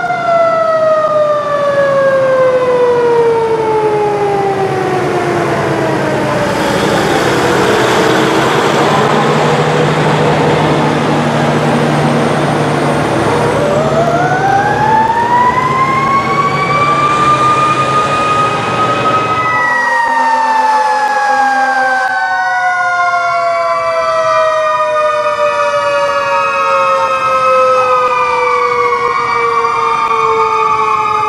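Fire trucks' mechanical sirens winding up and coasting down: a siren's pitch falls slowly over several seconds, and another winds up around the middle as a fire engine passes close with its engine running. In the last third several sirens overlap, rising and falling.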